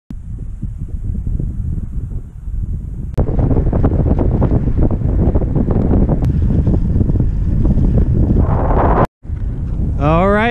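Wind buffeting the microphone of a camera moving along a road, a loud, low rumble that gets louder about three seconds in and cuts out briefly just before the end.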